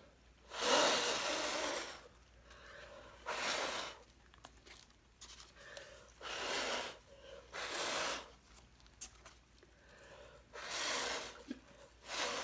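Someone blowing through a straw onto wet poured acrylic paint to push it outward: five separate puffs of air, the first and longest about a second and a half.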